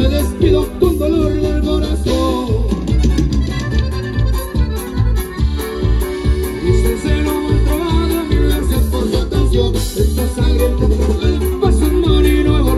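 Mexican regional dance music from a live band, played loud over a PA: a steady, evenly pulsing bass beat under a melody line.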